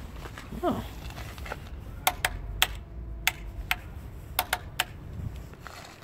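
Handlebar remote lockout lever for a Fox suspension fork being flicked back and forth: a run of about eight sharp plastic-and-metal clicks, starting about two seconds in and stopping about five seconds in.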